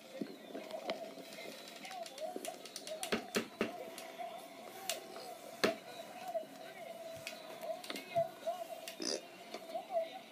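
Muffled voices, with a few sharp clicks and knocks.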